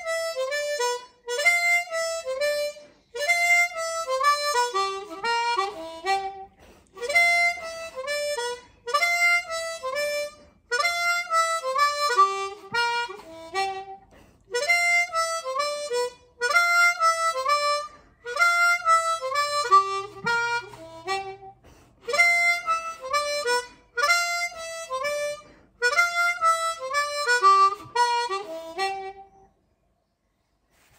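Diatonic blues harmonica playing a descending riff again and again. Each phrase opens with a glissando, a quick slide across the holes into the 5 draw, then falls through holes 4 and 3 to 2 draw. A bent 3 draw comes near the end of each phrase, and there are short breaks between phrases.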